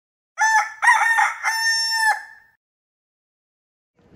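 A rooster crowing once: a few short notes, then one long held note, about two seconds in all.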